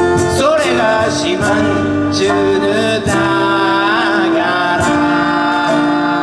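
Live band music: a male lead vocal over strummed acoustic guitar and plucked strings, playing continuously at full volume.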